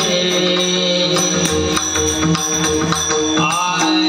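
Warkari bhajan: a group of men singing a devotional chant in held, sustained notes, with small brass hand cymbals (taal) ringing on a steady beat and a pakhawaj drum playing beneath.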